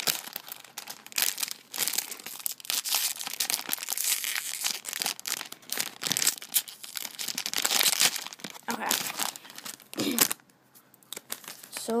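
Foil-lined blind-bag packet crinkling and tearing as it is opened by hand, a dense run of quick crackles that stops about ten seconds in.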